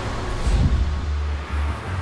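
Steady low rumble of city street traffic, with faint background music under it.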